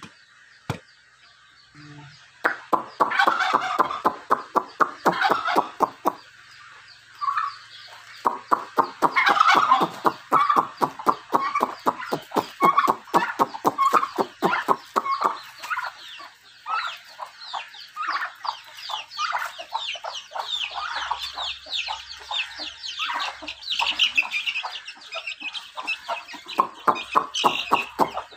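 Backyard chickens clucking in quick, continuous runs of short calls, starting about two seconds in.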